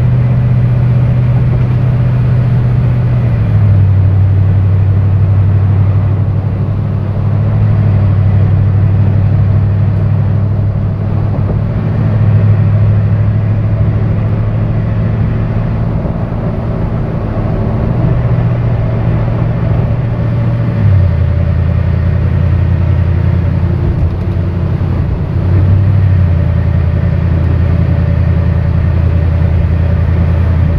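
Inside a truck's cabin while driving on a wet highway: a loud, steady low drone of engine and tyre noise over a haze of road noise. The drone steps down in pitch about four seconds in and again about 21 seconds in.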